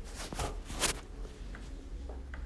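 Soft rustling and a few faint clicks as the speed-limiter buttons on the stalk behind the steering wheel are pressed, stepping the set speed down. Under them is a steady low hum from the engine idling.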